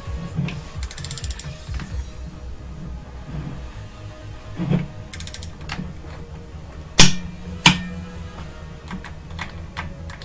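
Half-inch torque wrench ratcheting on a Subaru EJ253 cylinder-head bolt during the second tightening pass to about 51 ft-lb. Two sharp clicks come about seven seconds in, less than a second apart, as the wrench reaches its set torque.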